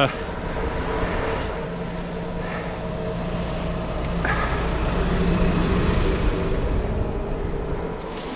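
Tractor fitted with a hedge-cutting arm running with a steady engine hum, growing louder as the bike nears and passes it.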